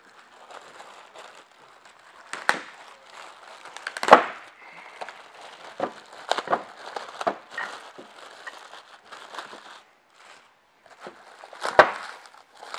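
Clear plastic wrapping crinkling and rustling as metal frame bars are pulled out of it, with a few sharp knocks from the bars being handled, the loudest about four seconds in.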